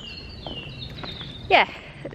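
A bird singing in the background, a thin high whistle that glides downward over the first second or so, over a steady low rumble of wind on the microphone.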